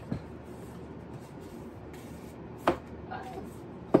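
Books being handled at a bookshelf: a dull thump at the start, then two sharp knocks of books against the shelf, one past halfway and one near the end.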